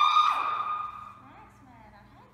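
A person's high-pitched scream: one long cry held on a steady pitch, loudest at the start and fading out about a second in.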